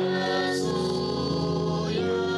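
Hymn music with choir singing in long held chords; the chord changes about half a second in.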